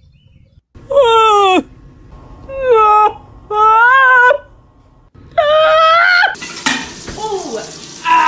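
A cat meowing loudly four times, long drawn-out calls that slide down and up in pitch. Near the end there is a sudden steady hiss with a person's voice over it.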